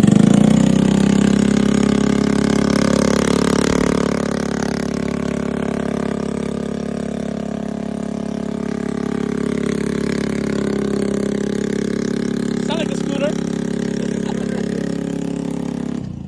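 A Honda Metro scooter's small single-cylinder four-stroke engine starting and idling. It catches right at the start, runs loudest for the first couple of seconds, then settles into a steady idle.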